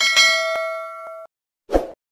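Subscribe-animation sound effect: a bright notification-bell ding that rings for about a second and cuts off sharply, with a couple of clicks over it. A short thump follows near the end.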